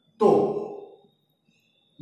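A man's voice making one brief drawn-out vocal sound a moment in, fading away.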